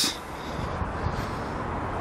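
Steady outdoor background noise, an even hiss with a low rumble and no distinct events.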